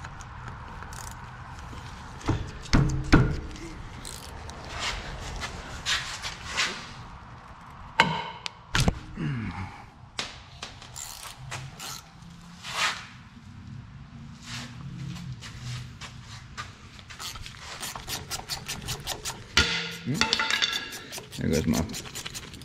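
Ratcheting combination wrench working the 12-point bolts of the driveshaft's U-joint at the rear differential pinion flange: scattered metal clicks, taps and knocks, then a fast, even run of ratchet clicks near the end as a loosened bolt is spun out.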